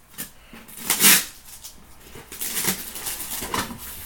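A cardboard shipping box being torn open: a sharp rip of packing tape about a second in, then rustling of cardboard flaps and contents being handled.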